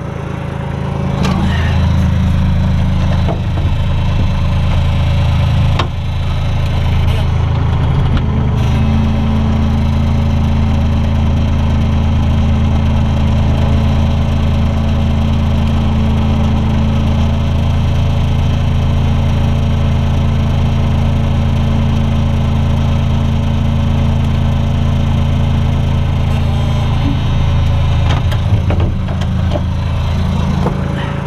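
Bobcat 443 skid-steer loader's diesel engine running hard, heard from inside the cab as the loader drives. The revs come up about a second and a half in, dip briefly around six seconds, then hold steady before easing off near the end, with a few clicks and creaks over the top.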